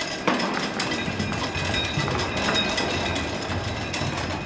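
Steel chains rattling and clanking without a break as they lower a hanging animatronic puppet sculpture, with a sharper clank about a quarter of a second in.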